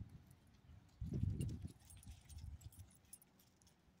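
Small clicks and jingles of metal tags and leash clips on small dogs moving on their leashes, with a low rumbling sound about a second in that lasts under a second.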